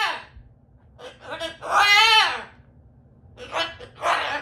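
Umbrella cockatoo calling: short voice-like calls, with one longer call about two seconds in that rises and falls in pitch.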